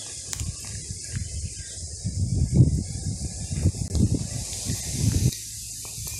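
A steady high insect chorus, with footsteps crunching on a gravel road that stop suddenly about five seconds in.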